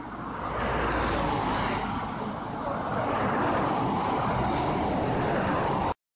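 Road traffic passing on a two-lane country road: a steady rush of tyre and engine noise from a lorry and cars, swelling as they come by. It cuts off suddenly near the end.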